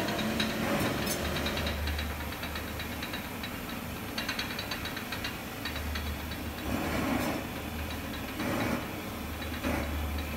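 Gas torch flame hissing steadily as it heats a bronze sculpture for a hot patina, with small crackling ticks as patina solution is brushed onto the hot metal. There are two brief louder swells late on.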